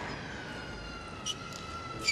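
A baby in the crowd crying in one long wail that sinks slowly in pitch, with a single sharp click a little past halfway.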